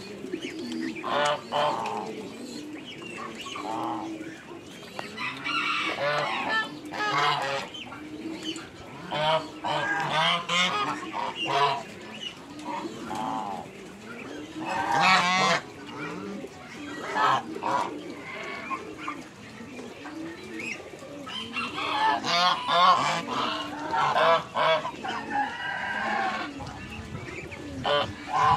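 A flock of domestic geese and Muscovy ducks calling, with many short honks and squawks overlapping, some with a quavering pitch. The calling comes in clusters, loudest about halfway through and again near the end.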